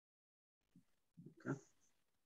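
Two or three short vocal sounds starting about halfway in, the last the loudest, heard through a video-call audio feed.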